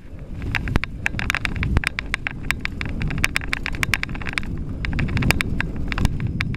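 Mountain bike riding fast down a dirt trail: the tyres rumble over the rough ground, and the bike rattles and clacks sharply many times. The rumble grows louder as the speed builds.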